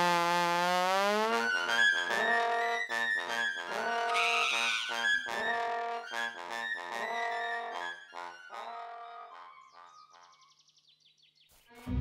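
Trombone and trumpet playing a brassy tune together. It opens with a rising trombone slide, moves into short, repeated notes, and fades away after about eight seconds.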